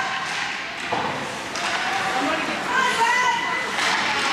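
Indistinct voices of spectators and players calling out in a large, echoing ice rink, with a sharp knock about a second in.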